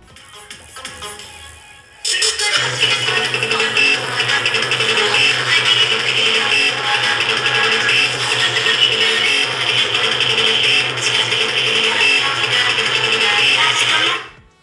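A song played through a small loudspeaker driven by a mini audio amplifier. It is faint at first, then jumps loud about two seconds in as the amplifier's volume is turned up, with a steady bass line, and cuts off abruptly at the end.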